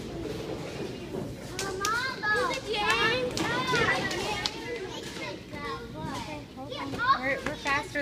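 Children's excited, high-pitched voices, shouting and squealing in play, in two spells with a lull between.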